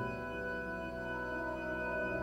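Church pipe organ playing sustained chords in a slow organ piece.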